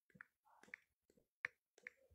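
Near silence broken by faint, short clicks at irregular intervals, several a second.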